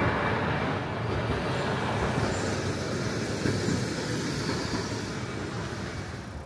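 City street traffic noise: a steady wash of vehicles on the road, easing off slightly near the end.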